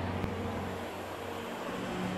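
Shopping-mall ambience: a low steady hum with a few held low tones that shift in pitch partway through.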